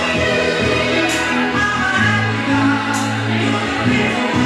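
A soul vocal group singing in harmony over a band backing, with a steady bass line and cymbal strokes about every two seconds.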